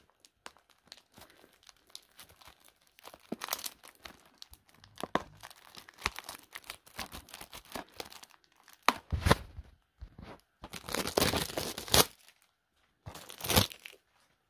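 Plastic wrapping being torn and crinkled by hand: irregular crackling and tearing, with louder bursts in the second half.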